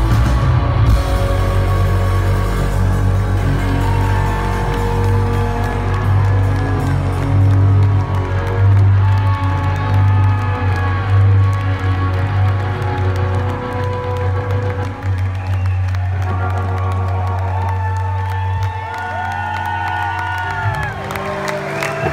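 Live shoegaze rock band ending a song: distorted guitars and bass holding long sustained tones and feedback over a heavy low bass, which drops out a little past halfway through the final stretch. Crowd cheering and whoops come in near the end as the music thins out.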